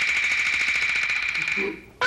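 A rapid, even roll from a Taiwanese opera percussion ensemble, with a steady ringing tone, fading out near the end.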